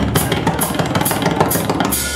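Drum kit played in a live drum solo: fast, busy strokes on bass drum, snare and toms, with cymbal hits repeating about three times a second.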